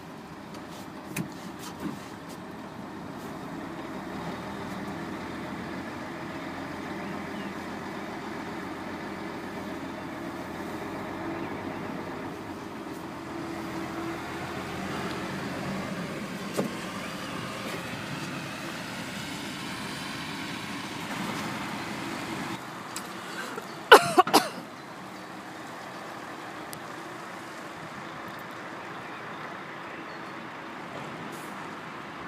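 Truck's diesel engine running as the truck moves slowly through the yard, heard from inside the cab, with its pitch rising for a few seconds in the middle. About 24 s in comes a sudden, very loud short burst with several pitches, lasting under a second.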